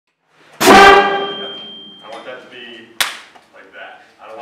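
School concert band of flutes, clarinets and brass playing one loud, short chord together, which then rings and dies away over about a second and a half in the room; a single sharp knock about three seconds in.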